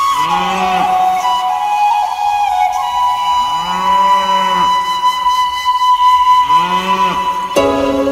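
A cow mooing three times, each low call about a second long that rises and falls, over a backing track with a long held flute note. Near the end a fuller instrumental passage begins.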